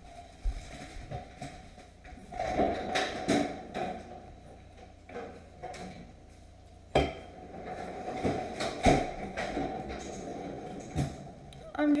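Phone handling noise: scattered knocks and rubbing as the phone is moved about in the hand, with the loudest knock about seven seconds in.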